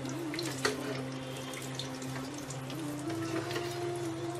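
Chicken pieces deep-frying in a pot of hot oil: a steady crackling sizzle, with one sharp click a little under a second in.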